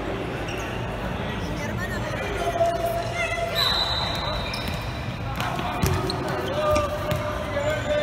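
Futsal ball struck and bouncing on a hard indoor court, a few sharp thuds that echo around the hall, over children shouting during play.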